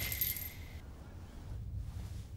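A faint, thin ringing tone dies away within the first second, like the tail of a metallic ring after an impact, leaving only a quiet low rumble.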